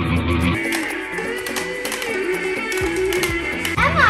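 Guitar music played as a background track, its low bass part dropping out about half a second in and coming back near the end.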